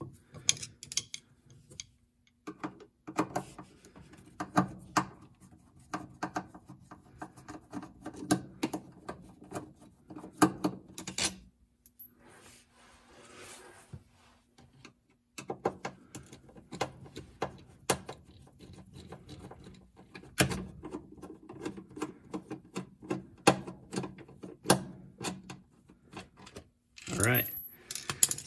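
A screwdriver turning out the Phillips screws of a top-load washer's shifter switch: irregular small clicks and metallic rattles, with a quieter pause about halfway. Near the end the plastic switch is worked loose from the transmission.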